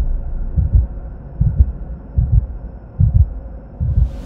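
Heartbeat sound effect from an animated logo intro: deep double thumps about every 0.8 s, five pairs in all, over a low steady hum.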